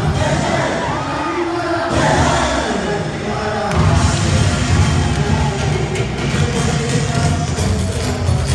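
Live garba dance music from a band on a PA system, with the dancing crowd cheering and whooping. The drum beat drops out about a second and a half in and comes back about four seconds in.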